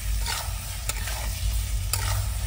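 Metal spatula stirring and scraping egg curry in a metal kadai while the masala sizzles and fries, with a few sharp clicks as the spatula knocks the pan.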